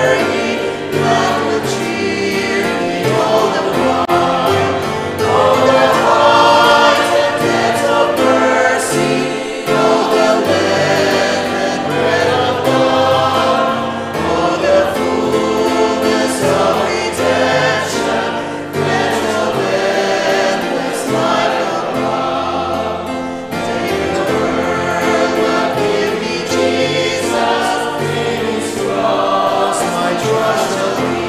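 A hymn sung by a group of men's and women's voices together, sustained and continuous.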